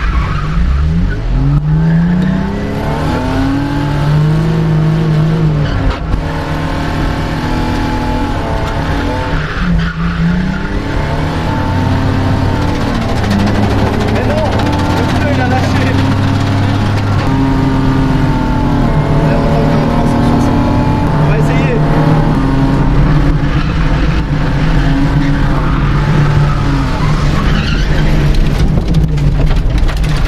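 Drift car engine heard from inside the cabin, revving hard and rising and falling repeatedly through a drift run, a steep climb in pitch in the first two seconds. Tyres skid and squeal on the track beneath it.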